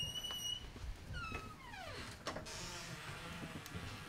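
A door creaking on its hinges: a short high squeak held at one pitch, then a longer squeal that falls steeply in pitch, with a few light clicks after.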